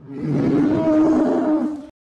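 A long, loud creature-like roar from a TV episode's soundtrack, held on one steady pitch for almost two seconds, then cut off suddenly near the end.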